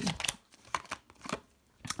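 Tarot cards being handled as one is drawn from the deck: about four short, sharp card flicks with quiet gaps between.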